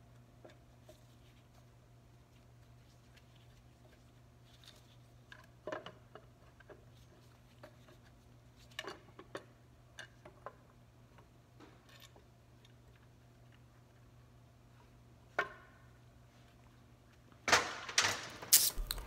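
Sparse, faint metallic clicks and knocks of engine parts being handled as the front cover is worked off a GM 3800 V6 on an engine stand, over a low steady hum. A louder knock comes near the end.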